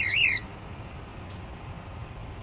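A budgerigar gives one short chirp of two quick rising-and-falling notes near the start, followed by low background noise.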